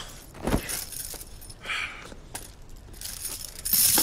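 Heavy iron chain clinking and rattling as a man is thrown to the ground, with a sharp thud about half a second in and a louder clatter just before the end.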